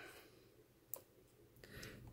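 Near silence with a single faint click about a second in, as the laptop's copper CPU heatsink is nudged into place over its screw holes.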